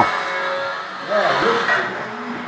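People's voices in a room: a brief spoken sound about a second in over steady background noise.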